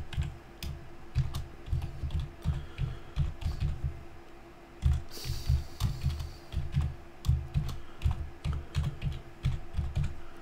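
Typing on a computer keyboard: a run of quick keystrokes, a brief pause about four seconds in, then a second run, as a password is typed and then typed again to confirm it. A faint steady hum runs underneath.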